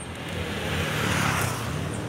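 A motor vehicle passing close by: its tyre and engine noise swells to a peak just over a second in, then fades. Underneath is the steady rumble of wind and road noise from riding a bicycle.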